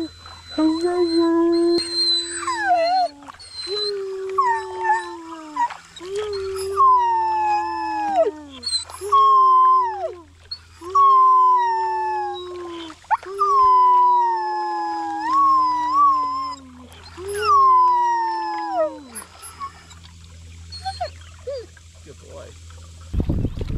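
A dog howling in a run of about nine long howls, each held for a second or two and sliding down in pitch at its end. A second howl at a different pitch overlaps many of them. The howling stops shortly before the end.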